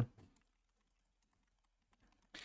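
Faint computer keyboard typing: a quick, irregular run of soft key clicks.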